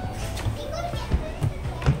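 Children's and adults' voices chattering over background music, with a few sharp knocks, the loudest near the end.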